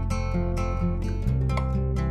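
Background music: acoustic guitar strumming, with a chord change a little past halfway.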